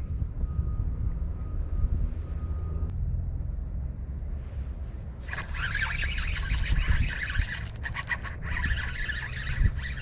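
Spinning reel being cranked from about five seconds in: a fast, rasping run of fine clicks from its gears and line roller as line is wound in. Low wind rumble on the microphone lies under it.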